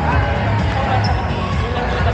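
Pickleball paddles popping against plastic balls and balls bouncing on the courts, many games at once, in a large echoing hall, over music and chatter.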